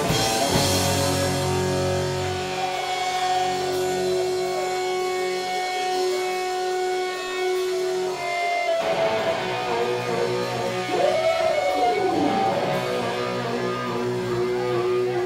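Amplified electric guitars played live, holding long ringing notes without a steady drumbeat. One note slides up and back down about eleven seconds in.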